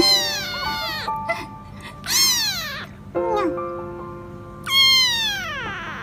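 A kitten meowing loudly three times, about two seconds apart: high-pitched calls that each fall in pitch. Background music with held notes plays underneath.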